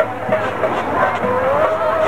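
Live stage music: a steady drum beat, about three strokes a second, with a long note held and rising slightly from about halfway through.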